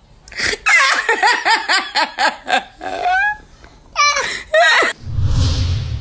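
A woman laughing hard in rapid, rhythmic bursts that rise into high-pitched squeals. Near the end, a short burst of low rumbling noise.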